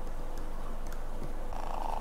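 Atman ATOM-2 battery-powered aquarium air pump running on two D-cell batteries: its small motor gives a steady buzzing purr. A higher hum joins near the end, and there are a few faint handling clicks.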